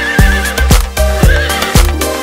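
A horse whinny sound effect, a wavering trill heard twice, laid over electronic dance music with a steady thumping beat.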